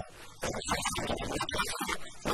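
A man speaking Arabic in a studio discussion, after a brief pause at the start.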